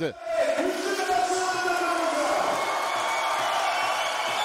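Crowd in a sports hall cheering and shouting, many voices at once, swelling up about half a second in and then holding steady.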